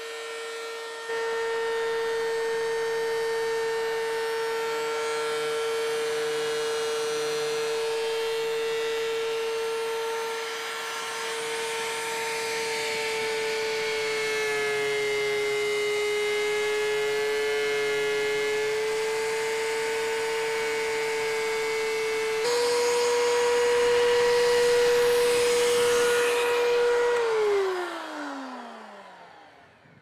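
DeWalt benchtop thickness planer running with a steady whine from its motor and cutterhead. In the middle a board is fed through and the pitch sags slightly under the cut. Near the end the motor is switched off and winds down, the whine falling in pitch until it stops.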